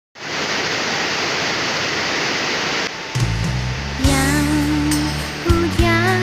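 Heavy rain, an even hiss, for about three seconds; then music comes in, with a bass line and a wavering melody starting about a second later.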